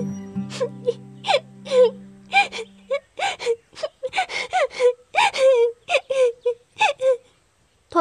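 A young woman crying in a long run of short, wavering sobs and whimpers, which stop about a second before the end.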